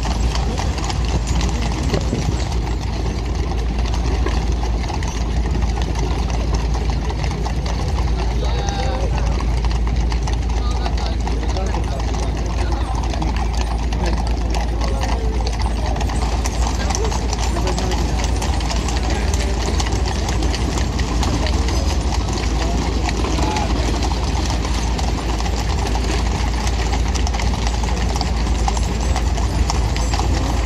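Busy street ambience: indistinct chatter of passers-by, some in foreign languages, over a steady low rumble, with many small knocks throughout.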